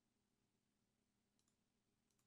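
Near silence with a faint steady hum, broken by a faint double click of a computer mouse button, press and release, about one and a half seconds in.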